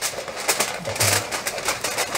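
Aluminium foil crinkling and crackling in short irregular bursts as it is pressed and crimped by hand around the rim of a round cake pan to seal it.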